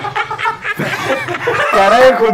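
A group of young men laughing hard together, loud and in quick repeated bursts.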